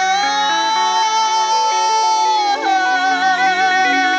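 Khmer pop song: a male voice holds one long high sung note, stepping down slightly about two and a half seconds in and carrying on, over a sustained backing accompaniment.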